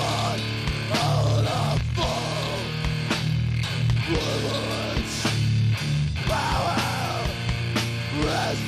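Death metal band playing live: heavily distorted guitars and bass over pounding drums, with harsh shouted vocals at times.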